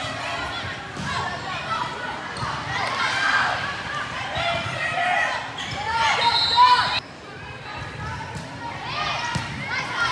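Indoor volleyball rally: players and spectators shout and call over one another, echoing in a large gym, with sharp slaps of the ball being hit. The voices swell to their loudest just before seven seconds in, then drop off suddenly.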